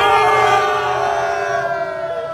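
A group of men shouting one long, drawn-out 'Siuuu' together, Cristiano Ronaldo's goal-celebration cry, starting loud and slowly sinking in pitch as it fades.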